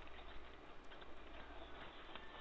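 Faint room tone: a steady low hum with a few light ticks.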